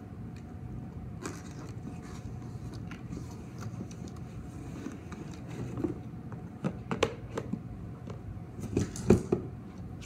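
Hands opening a box of CDs and handling what is inside: scattered knocks and clicks, coming more often in the second half, the loudest about nine seconds in. A steady low hum runs underneath.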